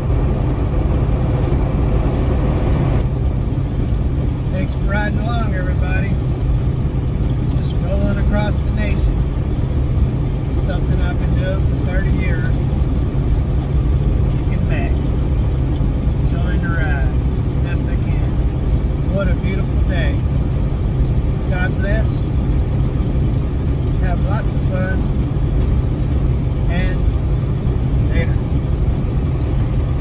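Steady low rumble of a Freightliner semi truck cruising on the highway, engine and road noise heard from inside the cab. From about four seconds in, short, scattered bits of a man's voice come over it.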